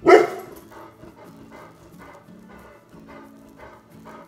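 A pet dog barking at rabbits outside: one loud bark right at the start, then fainter barks repeating about three times a second.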